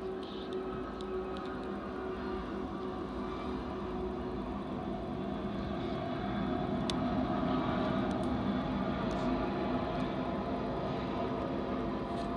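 Diesel locomotives of an approaching BNSF freight train, a steady engine drone over a rumbling noise that grows louder through the first half and then holds.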